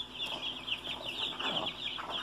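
Many small birds chirping continuously, a dense high chatter of short overlapping chirps.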